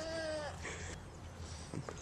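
A person laughing, one drawn-out note that falls slightly in pitch and ends about half a second in, followed by a short breath; then only faint background.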